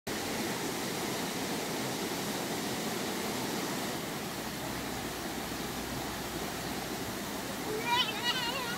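Steady rushing of a creek spilling over a small cascade and rocky rapids. Right at the end a child's high, squealing voice starts.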